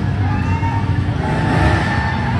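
Off-road truck engine running close by in an indoor dirt arena, a steady low rumble with the revs rising slightly partway through.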